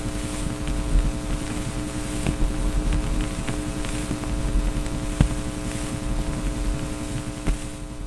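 A steady droning hum with a low rumble, holding one unchanging pitch, with a few faint clicks scattered through it.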